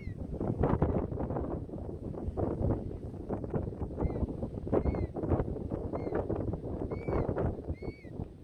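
Wind gusting and buffeting the microphone in uneven bursts, with short high chirping bird calls a few times, several of them bunched together in the second half.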